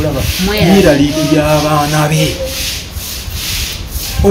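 A man singing unaccompanied, holding long steady notes. The singing breaks off a little past halfway, and a scratchy rubbing noise runs underneath throughout.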